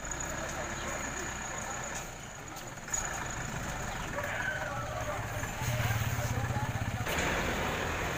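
A bus engine idling with a steady low throb that grows louder past the middle, while people talk around it.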